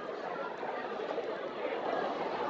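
Indistinct chatter of many banquet guests talking at their tables, a steady murmur of voices with no single speaker standing out.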